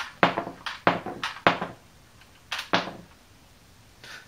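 Small hard-plastic toy bombs dropping one after another out of the Cobra Condor's clear wing magazine and clacking down: a quick run of about six sharp clacks, then two more after a short pause a little past the middle.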